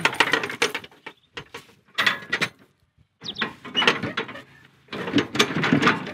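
Steel bars of a homemade mower-attachment frame clanking and rattling as they are worked into their mounting holes, in four bursts with short pauses between.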